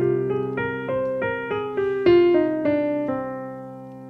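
Digital piano: a held low chord under a melody of single notes, about three a second, moving up and down, the last notes left to ring and fade.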